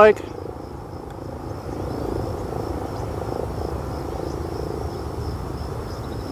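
Distant buzz of the E-flite EC-1500's twin electric motors and propellers as the RC plane climbs vertically, swelling a little in the middle. A faint steady high tone runs throughout.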